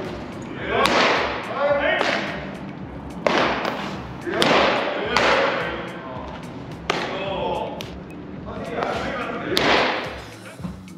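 Baseballs smacking into catchers' mitts during bullpen pitching in a large indoor hall, sharp thuds every second or so, with shouted calls echoing through the hall.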